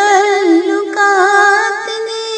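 A woman singing an Urdu poem (nazm) in a slow melody, holding long notes with vibrato; a new note begins about a second in.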